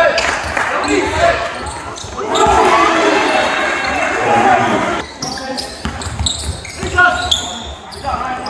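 Live gym sound from a basketball game: a ball dribbling on the hardwood floor while players and spectators call out, the voices echoing in the hall. The voices grow louder and busier for a few seconds starting about two seconds in.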